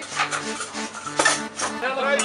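Accordion music with several sharp metallic clinks and clatters over it, the loudest about a second in.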